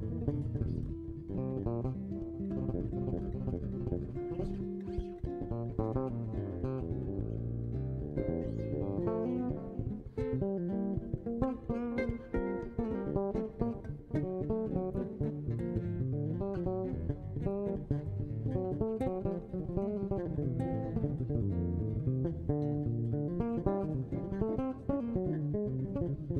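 Live jazz duo of guitar and bass: plucked guitar notes and chords over a moving bass line, played continuously.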